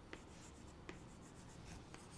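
Chalk scratching faintly on a chalkboard as triangles are shaded in, with a few light taps of the chalk against the board.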